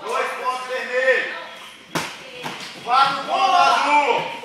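Voices calling out during the first second and again in the last second, with one sharp knock about halfway through.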